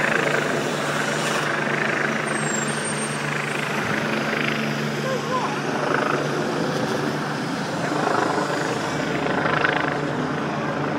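Helicopter flying overhead, its rotor and engine drone going on steadily, with voices in the background.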